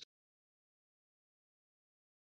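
Digital silence: the audio drops out completely as the speech stops.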